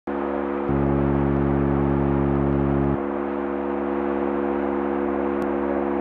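Modular synthesizer playing a sustained, droning chord of steady tones; the bass notes change about two-thirds of a second in and again around three seconds in.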